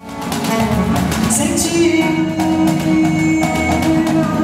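Live band playing an instrumental introduction with guitar, bass and percussion. The music begins suddenly at the start, with a held note through the middle.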